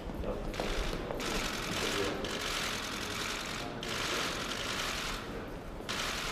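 Many press camera shutters firing in rapid bursts: a dense clatter of clicks in several stretches of one to two and a half seconds, with short breaks between them.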